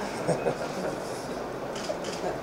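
Light laughter and a low murmur of voices from people in a room, with no one speaking clearly.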